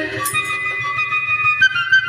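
A flute melody of a few long held notes, stepping up in pitch about one and a half seconds in, with the drums dropped out during an instrumental break in a Bengali folk song.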